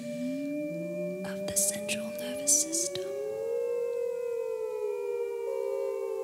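A cappella vocal quartet holding long, overlapping sustained notes, some voices sliding slowly in pitch against the others, with short hissing breath sounds in the first half.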